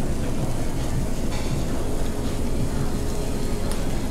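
Steady low rumble of an overhead stainless-steel extraction hood running above a tabletop barbecue grill, with a faint steady hum joining in about a second and a half in.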